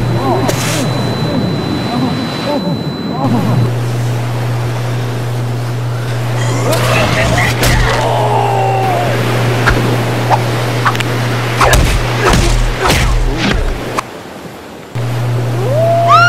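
Edited fight-scene soundtrack: a steady low drone under sharp hits and whooshes, with brief shouts and grunts. The drone drops out for about a second near the end.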